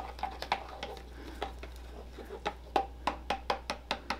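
A spoon stirring a thickening hydroxyethylcellulose gel in a plastic cup, with light clicks and taps against the cup wall that come more often in the second half.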